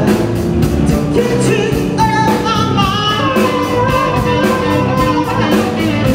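A live blues band playing electric guitar, keyboard, bass and drums, with a sustained lead melody that bends and slides in pitch.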